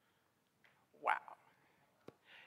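Only speech: a woman says a single "wow" about a second in, otherwise quiet room tone.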